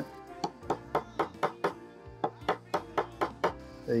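Flat metal file tapping a brass pin into a propeller hub: a quick run of light, sharp taps, about four a second, over background music.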